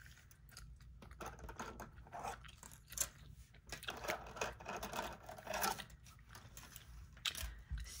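Close-miked gum chewing: irregular wet smacks and clicks. Plastic nail swatch sticks tap as they are set down on a counter.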